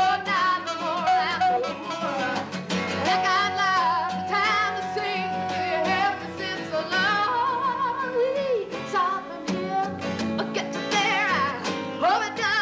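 A woman singing with a wavering vibrato to her own strummed acoustic guitar, holding one long note from about three seconds in to about six.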